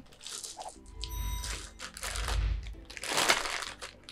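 Plastic snack bag crinkling in several short bursts as it is handled and opened.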